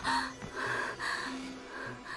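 A woman panting in several short, breathy gasps, out of breath from running, over soft background music.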